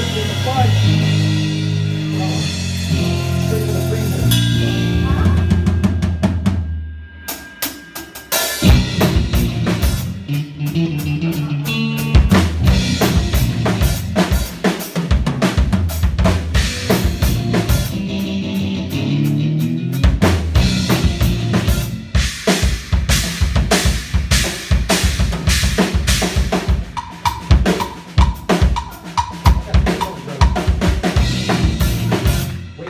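Live rock band playing: electric guitar and bass guitar over a drum kit. Sustained guitar and bass notes ring for the first six seconds or so, the sound drops briefly around seven seconds, then the full band comes in with busy drumming for the rest.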